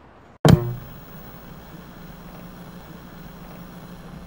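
End-card sound effect: a sudden loud hit with a short ringing tone about half a second in, then a steady low hum.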